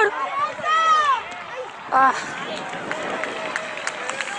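Voices shouting at a football match: a drawn-out call about a second in and a short high shout at two seconds, then softer background chatter from the sidelines.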